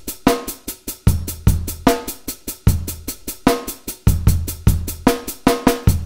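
Programmed MIDI drum kit beat of kick, snare and an even run of hi-hats, played back strictly on the grid with no swing: a very dull, very uninteresting, mechanical straight feel. It cuts off suddenly near the end when playback is stopped.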